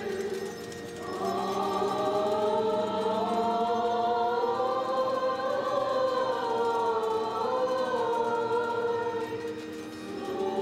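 Church choir singing an Armenian liturgical hymn in several voices over a low held note, a new phrase starting about a second in and easing off near the end.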